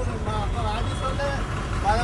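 Low, steady rumble of vehicle engines in traffic, a bus among them close alongside, heard from inside a car with the window open, under people talking.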